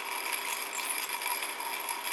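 Metal body jewellery rattling and clinking against the inside of a drinking glass as it is swirled in mouthwash, a continuous run of quick small clicks.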